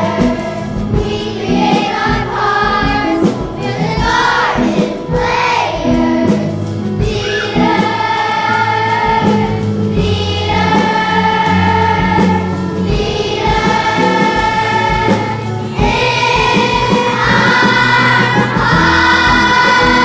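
Children's choir singing with a band accompanying. The first part moves in short rhythmic phrases; from about a third of the way in, the choir holds long sustained notes.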